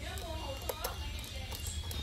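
A few light clicks from a small precision screwdriver bit turning a screw in a plastic instrument case, two close together just under a second in and more near the end, over a steady low hum.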